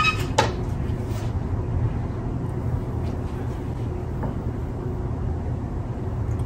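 Steady low hum of room noise, with a single sharp knock about half a second in and a couple of faint ticks later.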